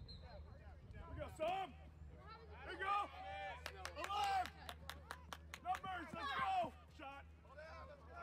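Players and sideline spectators shouting during youth lacrosse play, high-pitched voices calling out in overlapping bursts. A short whistle sounds right at the start, as the faceoff begins, and a quick run of about eight sharp clacks comes near the middle.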